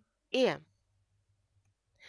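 A woman's voice says a single drawn-out vowel sound, falling in pitch, then near silence for over a second.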